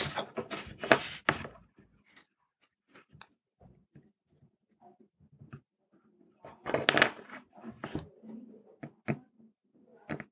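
Light clicks and taps of soldering work on a small circuit board on a wooden desk: the soldering iron tip and solder wire touching the chip's pins and the board shifting against the wood. There is a denser run of sharp clicks and scrapes about seven seconds in. A soft laugh trails off in the first second or so.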